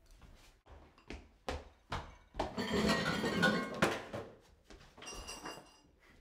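Tableware being handled at a table: a series of knocks and clinks of a bowl and spoon, with a louder, denser rattle lasting about a second and a half near the middle and a brief ringing clink about five seconds in.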